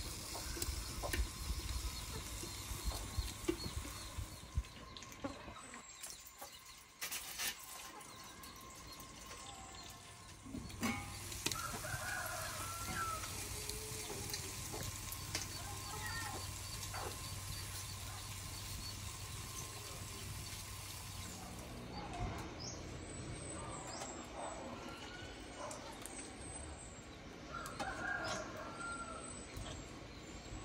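A rooster crowing a couple of times, once about twelve seconds in and again near the end, with chickens clucking, fairly faint over a low steady background.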